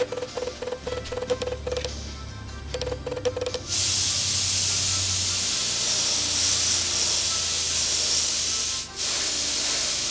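Airbrush spraying colour onto a fondant cake in a steady hiss that starts about a third of the way in and breaks off briefly near the end. Before the spraying there is soft clicking and rubbing.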